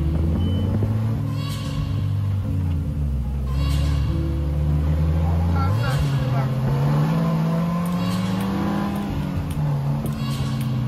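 Engine of an open three-wheeled Polaris Slingshot running while driving, heard from the seat with wind and road noise; about six seconds in it climbs steadily in pitch as the vehicle accelerates. Short bursts of voice come through at intervals.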